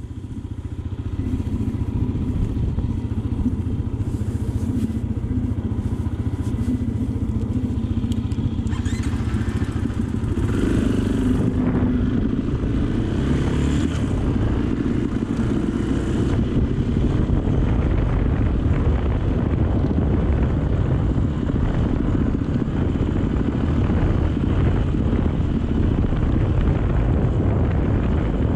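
Dirt bike engine running while riding over a gravel track; it gets louder about ten seconds in as the bike picks up speed.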